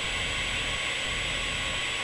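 Steady static-like hiss with a thin, high, steady tone above it, unchanging throughout.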